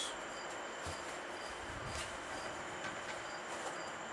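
A cricket chirping steadily, about two short high chirps a second, over faint room hiss. A soft knock comes about a second in and a click about two seconds in.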